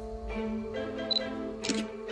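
Instrumental background music of sustained pitched tones, with a single camera shutter click near the end.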